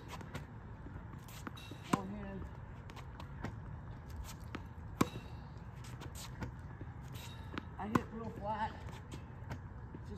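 Tennis balls struck with a racket: sharp single pops about every three seconds, with fainter ball bounces between them, over a steady low background.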